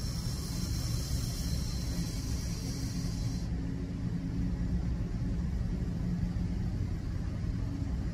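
A long drag on a box-mod vape: a steady airflow hiss with coil sizzle through the atomizer for about three and a half seconds, cutting off suddenly, over a steady low rumble.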